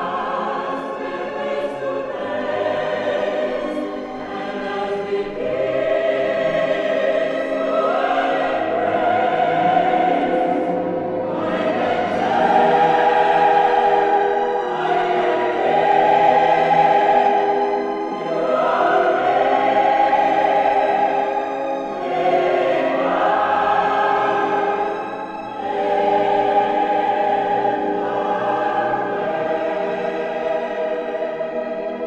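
Lush easy-listening orchestral music with a choir singing long, sustained chords over strings. The chords swell and change every couple of seconds.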